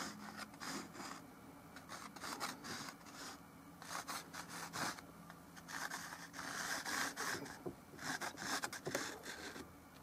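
A stick of white chalk scraping across textured canvas in quick irregular strokes as an outline is sketched, with a longer, louder stroke about two-thirds of the way through.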